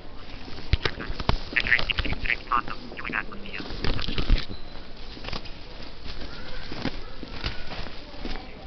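Footsteps knocking on a hard polished stone floor, with a quick run of short, high, wavering squeaks about a second and a half in.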